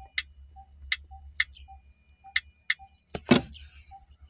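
Smartphone touchscreen keyboard giving a sharp key-press click for each of five letters tapped in turn, with a faint even ticking underneath and one brief louder noise near the end.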